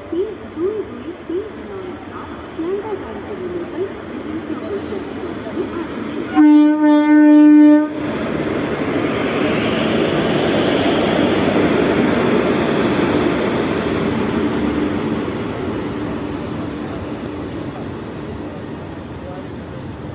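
A WAG-7 electric freight locomotive sounds a single horn blast of about a second and a half. It then runs past at close range with its open freight wagons, and the rolling noise swells and slowly fades.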